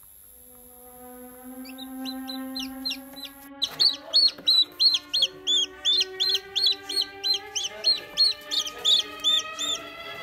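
Baby chick peeping: a steady run of short, high, arched peeps, about three a second. They are faint at first and loud from about three and a half seconds in, over background music with long held notes.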